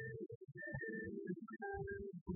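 Live band music from a low-fidelity cassette recording, with sustained notes over a bass line, cutting out briefly several times.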